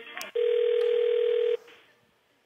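Telephone ringback tone heard over the phone line: a click, then one steady ring tone of about a second that cuts off, as the call is put through to an extension.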